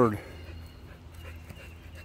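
A man's voice trailing off at the very start, then quiet outdoor background with a low steady hum.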